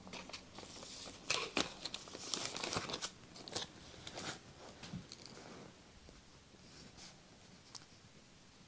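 Clear plastic sleeve crinkling and crackling as a plastic occluder paddle is slid into it and handled, close to the microphone. The crackling is densest in the first half and thins out after about five seconds.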